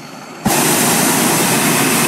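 Hot air balloon's propane burner firing: a loud, steady roar that starts suddenly about half a second in. It is a burn to heat the envelope so the balloon climbs faster.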